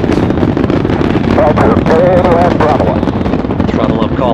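Space Shuttle launch noise: a loud, steady rumble thick with crackling from the solid rocket boosters. A voice rises over it for about a second, a little past the middle.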